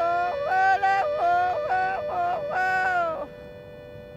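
A woman yodeling a string of short notes that jump up and down in pitch, over a small button accordion holding one steady note. The voice stops about three seconds in, leaving the accordion note sounding.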